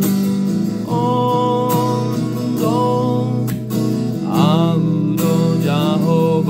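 A man singing a Toba Batak Sunday-school hymn to his own strummed acoustic guitar. The guitar runs throughout; the voice comes in about a second in, pauses briefly past the middle, then carries on.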